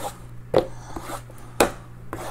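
Two sharp knocks about a second apart, from small cardboard trading-card boxes being handled and set down on a table.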